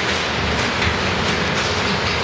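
Scattered sharp snaps and crackles from small leftover electrical discharges inside the charged acrylic Lichtenberg specimen, over a steady, loud background noise.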